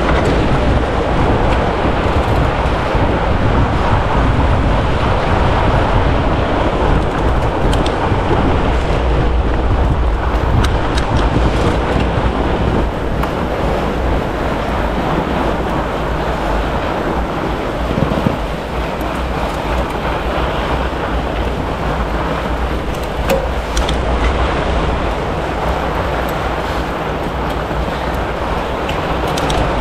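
Steady rushing noise of wind on the action camera's microphone, mixed with the roll of 4-inch tubeless fat-bike tyres over groomed, corduroy snow as a pack of riders pedals along.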